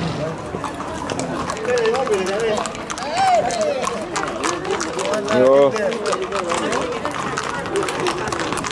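People talking and calling out over the clip-clop of horses' hooves on a paved street, with one voice loudest about five and a half seconds in.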